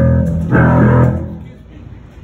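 Amplified band of electric guitar and bass playing two loud sustained chords during a soundcheck, with a short break between them, then ringing out and fading by about a second and a half in.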